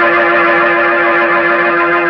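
A sustained organ chord held at full level, the musical bridge that marks a scene change in the radio play.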